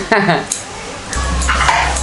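Talking and laughing voices in a small room, with a sharp click about half a second in. A low steady hum starts a little past halfway and keeps going.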